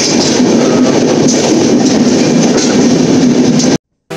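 Running noise of a moving passenger train heard from the open doorway of a coach: a loud, steady rush with no clear rhythm. It cuts off suddenly near the end.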